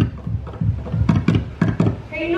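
Ipu heke (Hawaiian double-gourd drum) played in a hula rhythm: deep thumps from the gourd struck down, alternating with sharp slaps of the hand, roughly three to four strokes a second.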